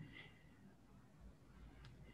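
Near silence: faint room tone of a video call, with one faint click near the end.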